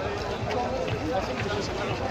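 Footsteps of a large pack of marathon runners jogging past on a paved street, a dense patter of many feet, mixed with scattered chatter from the runners.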